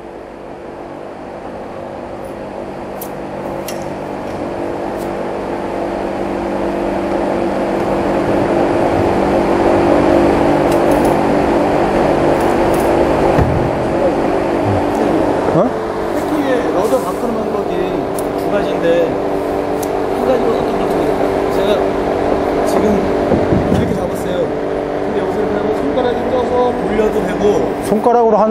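Steady electric motor hum from the sailing simulator rig, growing louder over the first ten seconds or so and then holding, with faint voices in the background.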